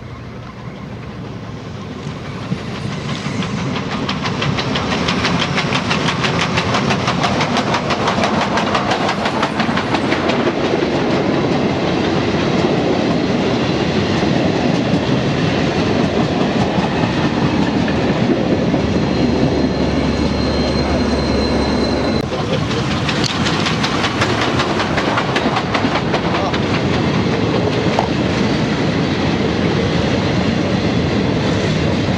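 The French 140 C 38, a 2-8-0 steam locomotive, approaches and passes at speed. Rapid exhaust beats and the clatter of wheels on rail grow louder over the first few seconds. The steady rumble of the passing coaches follows, with a low hum and a high tone about two-thirds of the way in as the diesel at the rear goes by.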